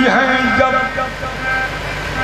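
Male qawwali singer's voice bending through a held note over sustained harmonium tones; the voice fades in the second half while the harmonium carries on.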